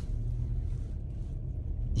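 A low, steady rumble, like a motor vehicle running.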